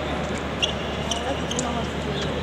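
Épée bout footwork: a few thuds and three short sharp clicks about half a second apart as the fencers move on the piste. Low voices of nearby spectators sit over the echoing hum of a large hall.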